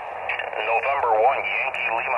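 A distant ham station's voice coming through the Yaesu FT-818 transceiver's speaker on 10-meter single sideband, narrow and radio-filtered over a steady hum: an operator answering a Parks on the Air CQ call.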